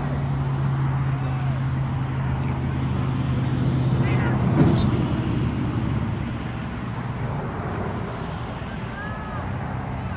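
A steady low motor hum, like an engine running nearby, that fades after about six seconds, over open-air noise with faint distant shouts. A single thump stands out a little before halfway.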